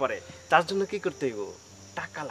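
A man's voice speaking briefly over a steady, high-pitched drone of insects in the surrounding greenery.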